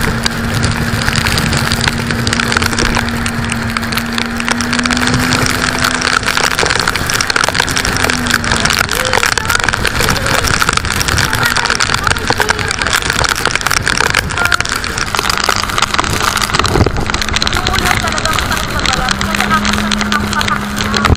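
Storm wind and rain battering a motorized outrigger boat at sea, a loud, dense rush that buffets the microphone. Beneath it the boat's engine drones as a steady low note; it drops away about seven or eight seconds in and comes back near the end.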